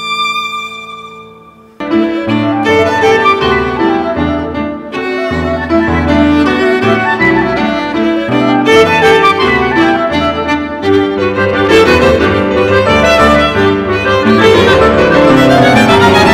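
Instrumental chamber music led by violin: a held chord fades away, then about two seconds in a brisk passage starts suddenly, with the violin over a moving lower accompaniment. A rising run of notes comes near the end.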